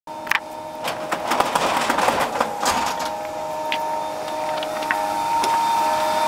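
150 kW Canyon Hydro Pelton turbine and its generator running, heard from outside the turbine house: a steady machine whine of several held tones over a rushing hiss. A few short sharp knocks sound over it.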